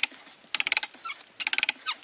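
Old bit brace's ratchet, the pawl clicking in two quick rattling runs about a second apart as the handle is swung back in short part turns.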